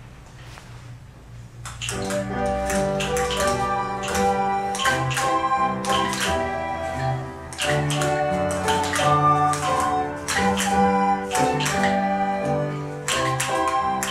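Live instrumental ensemble music starts about two seconds in and runs on with many notes that begin crisply.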